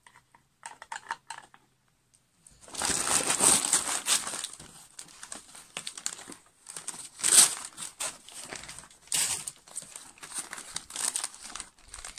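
Brown paper packaging being crumpled and rustled by hand as a parcel is unwrapped. The first couple of seconds are nearly quiet with a few faint clicks. Steady rustling then sets in and runs on, loudest a little past the middle.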